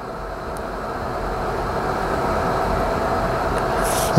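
A steady low rumbling noise with a faint droning tone in it, slowly growing louder.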